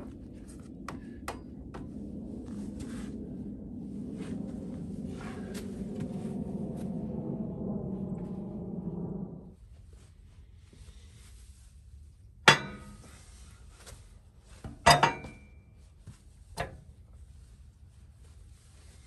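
A low, rough sound with small clicks, rising slightly in pitch, that cuts off suddenly about nine seconds in. Then three sharp metal clanks with a short ring, from the steel log clamp of a Wood-Mizer LX150 band sawmill being set against the log.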